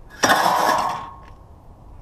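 A bundle of steel wire thrown onto a load of scrap metal in a pickup bed: a sudden metallic crash and clatter lasting under a second, with a short ringing tone as it dies away.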